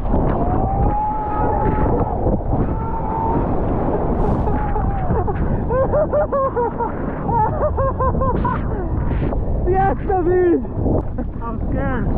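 A man screaming, first in a long held cry and then in short repeated yells, over the loud rush of breaking surf and whitewater and wind buffeting the microphone.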